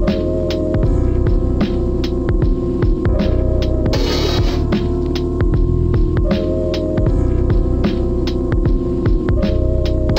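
Dark, gritty boom bap hip-hop instrumental: a deep, heavy bass and kick under crisp, evenly spaced drum hits, with a short looped melodic sample that repeats about every three seconds. A brief bright wash of noise comes in about four seconds in and again at the end.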